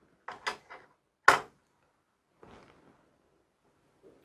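Handling noise from a small wooden mosaic coaster with glass tiles being moved in the hands: a few light clicks, a sharper knock about a second in, then a brief faint rustle.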